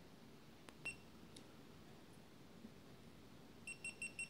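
GoPro Hero Session action camera: its button clicks once and the camera gives a short high beep about a second in. Near the end comes a quick run of short high beeps, the camera's signal that it is stopping recording and shutting off.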